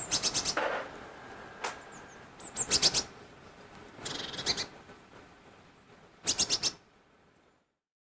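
Eurasian magpies chattering: four short, harsh, rapid rattles, a second or two apart.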